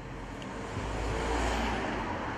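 A road vehicle passing by: a low rumble that swells to its loudest a little past the middle and then fades.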